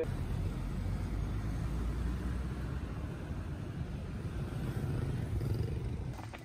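Steady low rumble of road traffic, heard from a vehicle moving along a city street with motorbikes and trucks.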